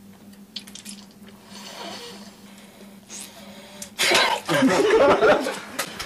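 Faint wet chewing and slurping as raw live octopus is eaten. About four seconds in, a group of people breaks into loud laughter and voices.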